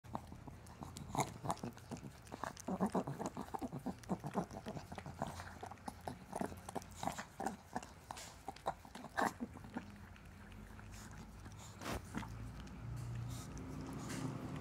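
A dog licking a person's face right at the microphone: rapid wet licks and smacks, dense for the first nine seconds or so, then only a few scattered ones.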